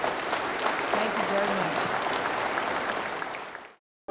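Audience applauding, a dense patter of clapping that cuts off suddenly near the end.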